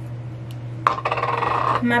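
A small metal jar clinks sharply onto a hard surface about a second in, then rattles and rings briefly as it settles.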